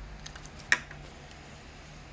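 Light plastic taps and then one sharp click about three-quarters of a second in, as a toy car is taken out of a plastic surprise-egg capsule.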